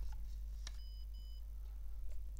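A click, then two short, high beeps in quick succession from a serial card reader as a card is swiped through it, signalling that the card has been read; a steady low hum lies underneath.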